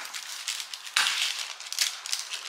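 Chef's knife cutting a tomato in half on paper over a countertop: a run of crisp cutting and scraping noises, the loudest about a second in.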